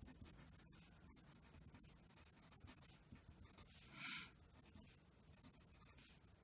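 Graphite pencil writing on lined paper: faint, irregular scratching strokes, with one brief louder rasp about four seconds in.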